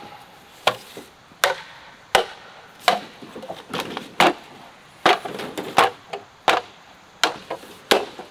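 Repeated sharp strikes of a machete on bamboo poles, roughly one every three-quarters of a second, each with a brief hollow ring, with lighter knocks of poles against each other in between.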